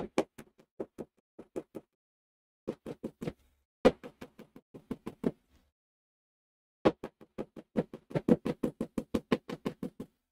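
Small hammer tapping along the edge of a leather wallet to close up freshly punched stitching holes before stitching. The taps come in three runs with short pauses between, the last run the quickest and longest at about five taps a second.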